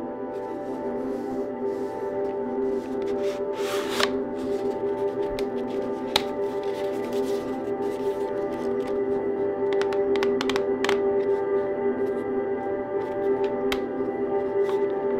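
Soft ambient background music with steady held tones, over which cardboard packaging rustles briefly about four seconds in and a few sharp clicks and taps come from handling the filter box and its plastic case.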